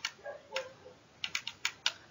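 Calculator keys being pressed: a sharp click at the start, then a quick run of four clicks in the second second, as the sum 3/291 × 65 is keyed in.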